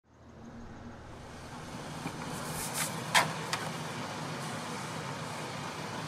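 Steady low rumble of a car heard from inside the cabin, fading in from silence over the first couple of seconds. A sharp click comes a little past three seconds in, with a few lighter clicks around it.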